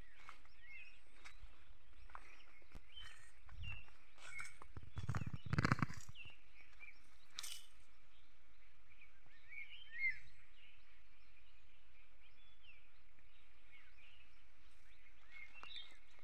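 Quiet rural outdoor ambience with faint, scattered bird chirps, and a brief louder rustling noise about five seconds in.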